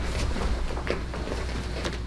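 A low steady hum with a few faint soft knocks and rustles from a person in a martial-arts uniform getting up off a foam floor mat.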